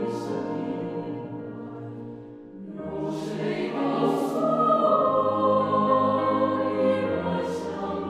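Mixed choir singing in Mandarin with grand piano accompaniment: a held phrase fades away, and after a brief dip a new, louder phrase begins about three seconds in.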